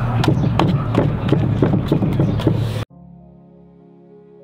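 A paintbrush slapping and dabbing thick, chunky milk paint onto a wooden board, a quick run of sharp taps over a steady low hum. About three seconds in, it all cuts off suddenly and soft background music takes over.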